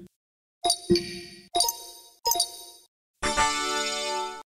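Windows system sounds played one after another: three short two-note speech-recognition chimes, then, a little after three seconds in, the Windows 'tada' fanfare, a bright chord that rings on.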